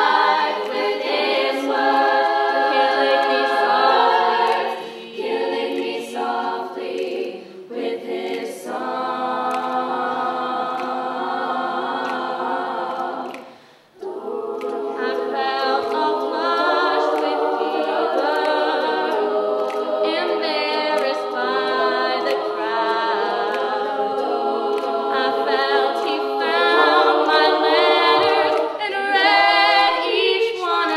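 Female a cappella vocal group singing in harmony, sustained chords with no instruments. The voices stop briefly about halfway through, then come back in.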